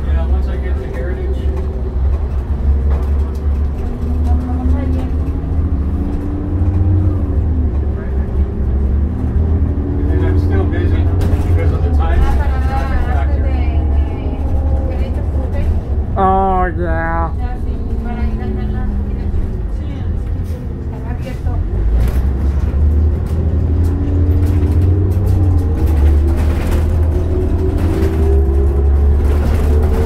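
Inside a 2002 New Flyer D40LF diesel city bus under way: a steady low engine and road rumble. The engine note climbs in pitch and falls back several times as the bus pulls away and shifts through its gears.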